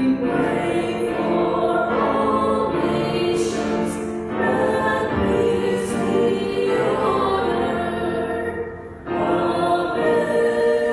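Several voices singing a hymn together in long held lines, with a short break for breath about nine seconds in.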